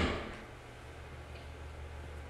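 Quiet room tone with a steady low hum, after a soft thump right at the start that fades away within about half a second.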